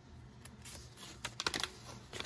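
A folded paper instruction sheet being handled and opened out: a run of faint, crisp paper crackles and clicks, loudest about a second and a half in.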